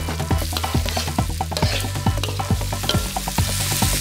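Freshly pounded spice paste and seafood stir-frying in a hot pan: steady sizzling with many quick irregular pops and scrapes from the stirring.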